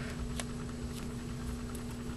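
Steady low background hum with a few faint clicks as fingers handle the beadwork, threading fishing line back through seed beads.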